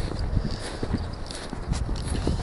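Footsteps of a person walking through snow at a steady walking pace, each step a short muffled thump.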